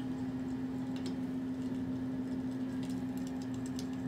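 Long acrylic fingernails scratching across bare skin on a man's upper arm in several short strokes, more frequent near the end, over a steady low hum.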